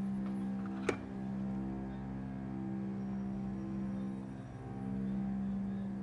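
Dark ambient background score: a low sustained drone that slowly swells and eases, with a sharp click about a second in.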